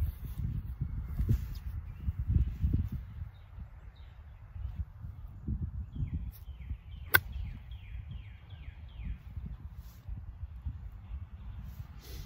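Wind gusting on the microphone, with a single sharp click about seven seconds in as a pitching wedge strikes a golf ball on a half pitch shot.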